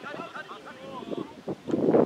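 Spectators talking, then a sudden loud gust of wind buffeting the microphone near the end.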